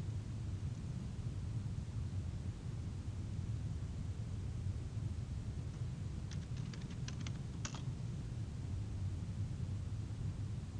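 A quick run of about nine keystrokes on a computer keyboard about six seconds in, the last one the strongest, over a steady low hum.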